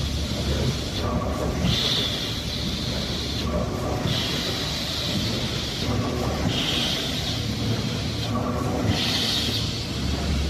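Jumbo automatic folder gluer and stitcher for corrugated boxes running, with a steady low mechanical rumble and a hiss that rises and falls about every two and a half seconds as the cycle repeats.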